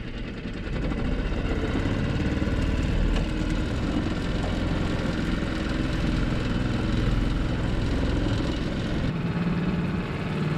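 Tohatsu 5-horsepower four-stroke outboard motor running steadily, pushing a small sailboat along under power. It gets louder about a second in and then holds steady.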